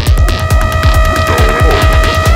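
Psychedelic trance music: a fast, rolling kick-drum and bass pulse under a sustained synth tone that comes in right at the start.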